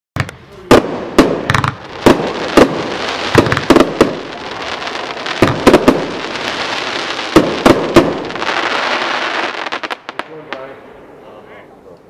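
Fireworks cake firing its shots: about a dozen sharp bangs of bursting salutes at uneven intervals over a continuous hiss. The volley dies away after about ten seconds, and voices follow near the end.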